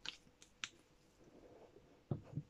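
Near silence, with three faint clicks early on and a soft rustle later: light handling of plastic cosmetic bottles.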